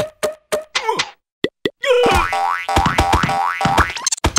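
Cartoon sound effects: a string of short springy boings, then about two seconds in a dense, rapid run of hits with repeated rising sweeps.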